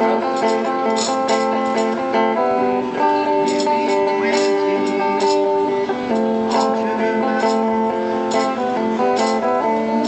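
A guitar being strummed, the chords changing every second or two.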